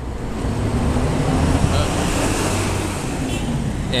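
Road traffic: a motor vehicle passing close by, its engine hum and tyre noise growing louder through the middle and easing off near the end.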